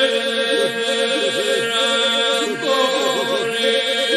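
Albanian Labërian polyphonic folk singing: a steady, sustained drone with voices over it in wavering, heavily ornamented lines.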